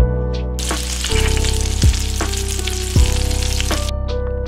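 Food sizzling in a hot pan, a dense frying hiss that starts about half a second in and cuts off just before the end, over background music with a soft steady beat.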